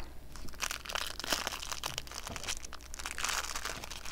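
Crinkling plastic wrapper of a snack pack of crackers being handled and torn open, a run of irregular crackles throughout.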